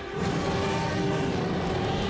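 A cartoon Tyrannosaurus rex roaring: one long, low, rough roar that starts just after the beginning and holds steady, over background music with a held note.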